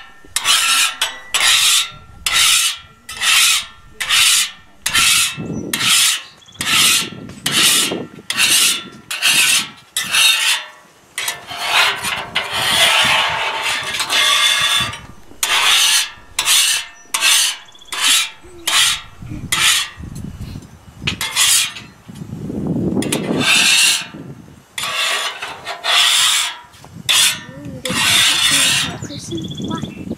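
Metal scraper scraping the steel cooktop of a Blackstone flat-top griddle, cleaning off cooked-on residue after cooking. It goes in short strokes about two a second, turns into longer unbroken scraping in the middle, then goes back to short strokes.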